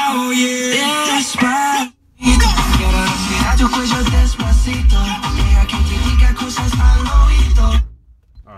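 Music playing loud through a car audio system, heard inside the cabin: a melodic track for about two seconds, a short break, then a bass-heavy track with strong deep bass from the subwoofers. It cuts off abruptly at the end as the stereo is muted.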